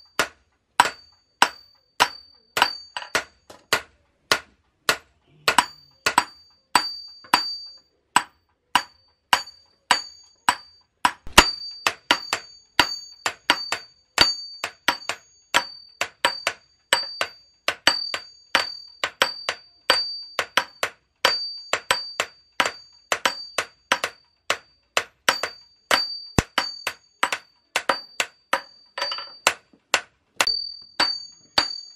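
Hand hammer striking a red-hot steel knife blade on an anvil during forging, in a steady rhythm of about two to three blows a second, each blow ringing briefly.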